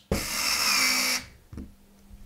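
Electric screwdriver running for about a second, driving a screw to fix a PC case fan to its metal mounting bracket, then stopping sharply. A faint knock follows.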